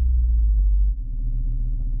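Deep, steady bass drone of a cinematic intro soundtrack, the lingering tail of an impact hit, stepping down and getting a little quieter about halfway through.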